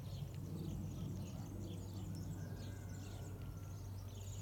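Small birds chirping and twittering repeatedly in the background over a steady low hum.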